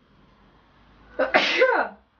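A woman sneezes once, loudly, a little over a second in, after a short inbreath. The sneeze is set off by loose face powder in the air.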